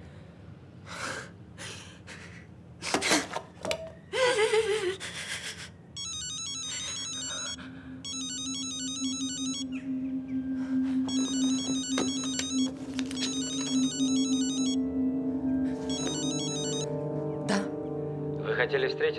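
A woman's sobbing breaths, then a mobile phone's electronic ringtone ringing in repeated bursts of about a second and a half. Film score music plays under it, a low held note joined by more notes that swell toward the end.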